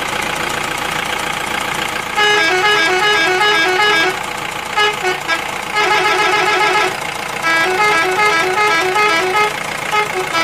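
A steady engine-like drone, then from about two seconds in a musical vehicle horn plays a tune of short beeping notes. The tune comes in several runs with brief gaps and is louder than the drone.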